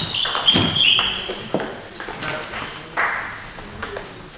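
Table tennis rally ending: sharp clicks of the ball off bats and table, with high squeaks of shoes on the sports-hall floor in the first second.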